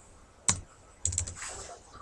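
Laptop keys tapped to punch numbers into the calculator: one sharp click about half a second in, then a quick run of clicks about a second in.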